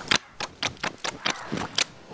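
Eating sounds: a quick, even series of sharp mouth clicks while chewing, about four a second.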